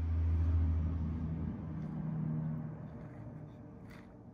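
A low rumble with a steady low hum in it, loudest in the first second and fading away over the next few seconds.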